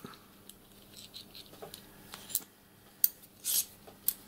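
Small steel brake parts, a pivot rod and its fittings, handled by hand: a few light metallic clicks and a short scrape about three and a half seconds in.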